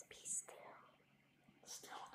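Quiet whispering: soft, breathy speech with sharp hissing 's' sounds, one about a third of a second in and another near the end.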